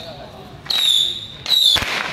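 A high metallic clang struck twice, about 0.8 s apart, each stroke ringing briefly and fading. A single sharp firecracker bang comes near the end.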